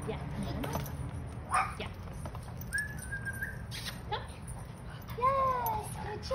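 Puppy whining: a thin high whine about halfway through, then louder short whines that rise and fall in pitch near the end.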